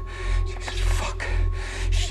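A person breathing hard in ragged gasps, several breaths about half a second apart, over a low, pulsing music drone with a steady thin high tone.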